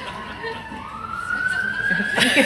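Emergency vehicle siren wailing: one slow tone that falls in pitch until about two-thirds of a second in, then climbs again.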